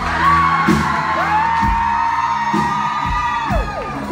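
Live rock band playing, drums keeping a steady beat under guitar and keyboard, with a long whoop held high for about two seconds that falls away near the end.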